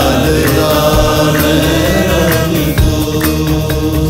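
Hindi film song recording: a male voice sings a long, gliding, held line over sustained backing and a drum beat.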